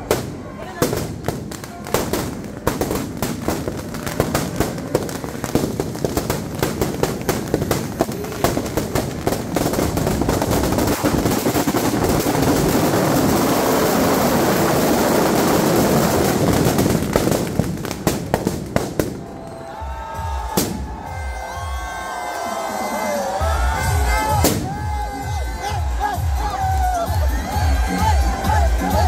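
Firecrackers packed inside a burning Ravan effigy going off: a rapid string of sharp bangs that thickens into a continuous crackle, then dies away after about nineteen seconds. After that, loud dance music with a steady bass beat and singing plays from street loudspeakers over a crowd.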